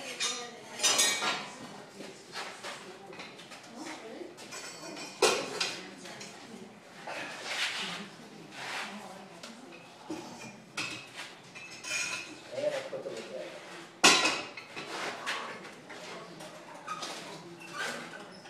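Steel pouring shank and tongs clanking and scraping against a foundry furnace as the emptied silicon carbide crucible is lowered back in and the lid swung shut. Scattered irregular metal knocks throughout, with one sharp clank about 14 seconds in.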